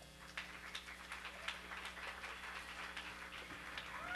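Sparse, scattered hand clapping from a small club audience after a song ends, irregular claps over a faint steady amplifier hum.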